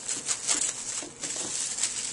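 Plastic wrap and a plastic freezer bag crinkling in the hands as wrapped frozen bananas are handled and bagged: a dense run of quick, irregular crackles.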